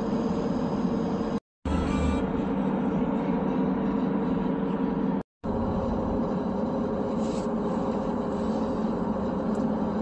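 Steady road and tyre noise with a low hum inside a moving 2015 Subaru Outback's cabin at highway speed. The sound cuts out abruptly twice, about a second and a half in and again about five seconds in.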